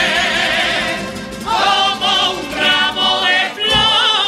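A Cádiz carnival group singing together in chorus, many voices with a wavering vibrato, over a steady drum beat that drops out shortly before the end.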